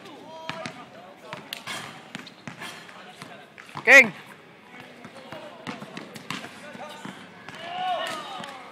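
A basketball bouncing on an outdoor hard court, a scatter of irregular knocks, with a loud shout about halfway through and another call near the end.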